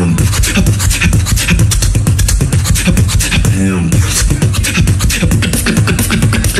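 Human beatboxing through a microphone and PA: a fast run of snare and hi-hat clicks over a deep, continuous bass line. About three and a half seconds in there is a falling vocal pitch sweep.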